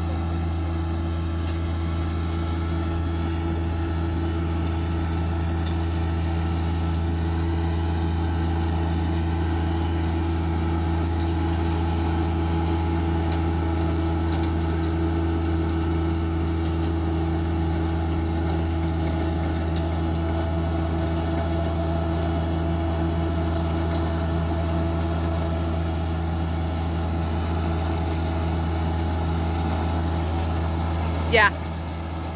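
Compact tractor engine running steadily under load, driving a Redlands Jumbo 1208N mini round baler through the PTO as it picks up and rolls hay. An even, unchanging drone.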